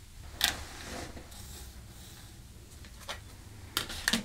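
Quiet scratch of a fabric marker pen drawing a line across cotton fabric, with a short rustle of handled fabric about half a second in and a couple of light ticks near the end.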